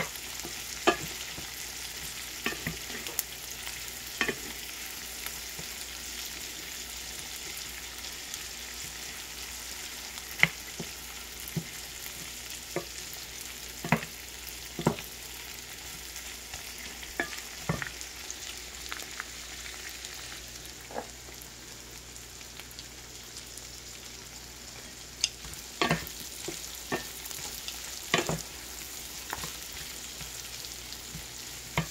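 Head-on shrimp frying in butter and garlic in a nonstick pan, a steady sizzle, with a wooden spatula clicking and scraping against the pan at irregular moments as the shrimp are stirred and turned.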